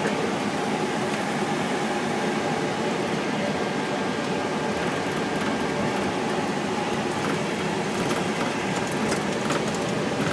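Steady hiss and hum of an airliner flight deck on the ground after landing: air-conditioning and equipment ventilation with engine noise underneath, and a faint steady tone running through it.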